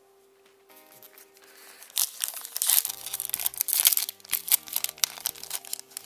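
Foil booster pack wrapper being crinkled and torn open by hand, starting about two seconds in, with fainter music of steady held tones underneath.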